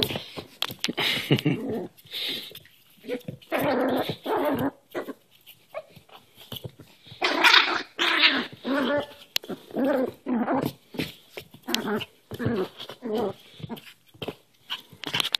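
Cairn terrier puppy growling while play-fighting a hand, in a string of short growls with pauses between them, the loudest about seven seconds in.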